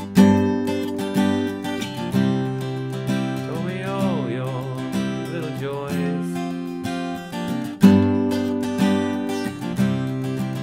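Acoustic guitar with a capo on the third fret, strummed chords ringing out about once a second, with harder strokes near the start and again near the end.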